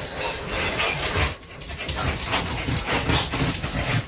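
A dog making short, irregular vocal sounds.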